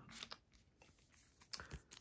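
Near silence, with two brief faint rustles: the second, about a second and a half in, is the crinkle of a foil hockey-card pack wrapper being picked up.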